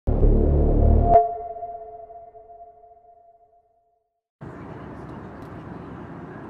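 A loud, low, dense sound is cut off about a second in by a single bell-like ping whose two ringing tones die away over about three seconds. After a short silence, a steady rushing noise starts about four and a half seconds in.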